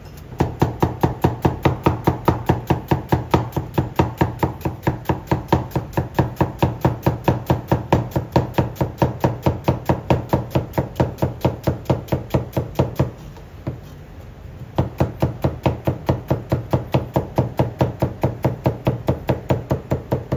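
Chinese cleaver slicing onion halves on a plastic cutting board: a quick, even rhythm of knocks as the blade strikes the board, breaking off for a moment about two-thirds of the way through, then picking up again.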